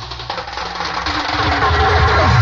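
Live go-go band playing: a dense, loud band mix that swells toward the end, with low drum hits in the second half.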